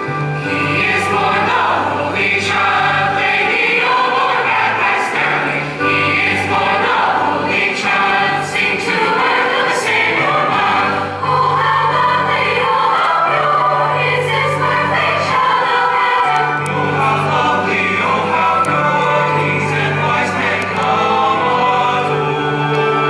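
Mixed-voice jazz choir singing in harmony, with long held low notes carrying a bass line underneath.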